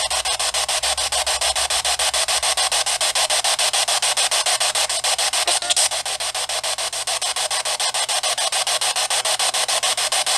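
Spirit-box static from a small handheld speaker: a steady hiss chopped into rapid, even pulses. The uploader hears in it a reply, "It's light".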